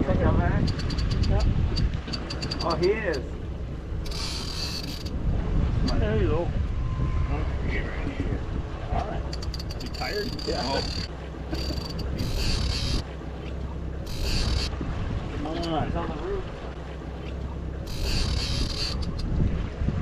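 Fishing reels being worked against hooked fish: a fast run of fine clicks in the first seconds, then repeated short bursts of high whirring as line is reeled in, over a steady low rumble of wind and boat.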